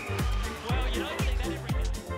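Background electronic dance music with a steady kick drum, about two beats a second.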